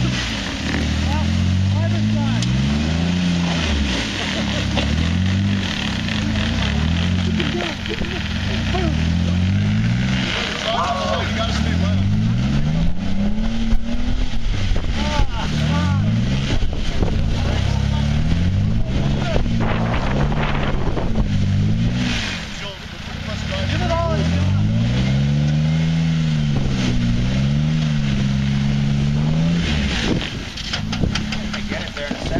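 Jeep Wrangler Unlimited's engine revving up and down over and over as it crawls over rock ledges, the pitch rising and falling every second or two and dropping off briefly about 22 seconds in.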